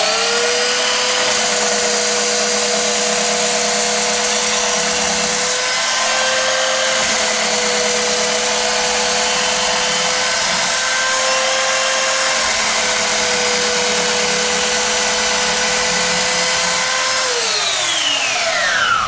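Cheap handheld belt sander with an 80-grit belt grinding the aluminum bottom of a Sea-Doo ride plate. It gives a steady motor whine under a loud grinding hiss, winding up right at the start and spinning down with a falling whine near the end. The owner says he can already hear its motor being affected by aluminum shavings.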